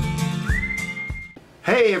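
Intro music: a whistled melody over a plucked accompaniment, rising to a long held whistled note that stops about one and a half seconds in.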